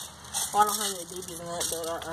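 Indistinct speech: a person's voice talking, with no gunshots or other distinct sound.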